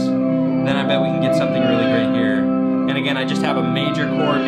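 A looped chord progression from a one-string shovel guitar playing through a chain of guitar effects pedals: sustained chords underneath, with repeated swooping pitch glides sweeping up and down over them as the pedals are worked.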